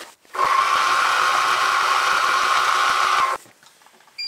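Milling machine with an end mill taking a final light cut on a small engine bearing cap: a steady whine with hiss that starts just after the beginning and stops abruptly about three and a half seconds in.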